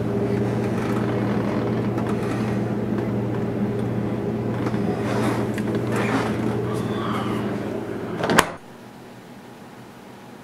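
Steady electrical hum of a refrigerator with its door open, with light rustles and knocks of cans and bottles being handled on the shelves. About eight and a half seconds in comes a single sharp thump, after which the hum gives way to a quieter steady hiss.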